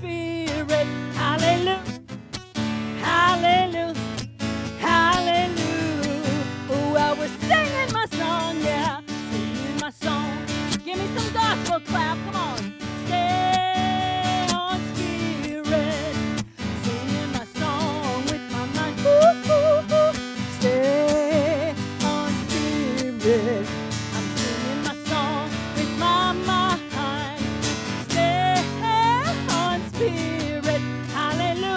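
A woman singing a lively gospel song into a microphone over strummed acoustic guitar, her voice wavering and sliding between notes, with one long held note about halfway through.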